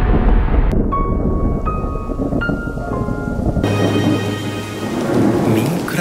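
Thunder rumbling over rain, under soft music with held notes. The rumble cuts off suddenly about three and a half seconds in, leaving rain and music.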